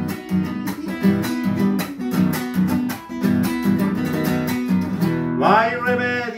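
Classical guitar strummed in a steady chacarera rhythm, an instrumental passage between sung verses. A man's singing voice comes back in near the end.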